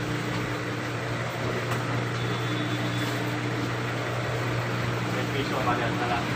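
Steady, unchanging low machine hum, as from a motor or fan running continuously.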